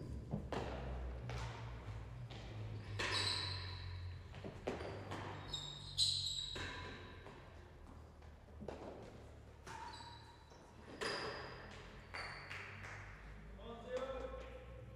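A real tennis rally: the solid ball knocking off racket strings, the court walls and floor, about ten sharp hits spaced a second or two apart, each ringing on in a large echoing hall, with brief high squeaks between some of them.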